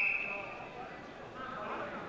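A referee's whistle blown once in one steady, shrill blast that fades within a second, starting a wrestling bout. Voices of spectators calling out follow.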